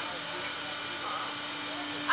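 A steady, even mechanical hum from the Slingshot ride's machinery while the capsule waits to launch, with faint voices in the background.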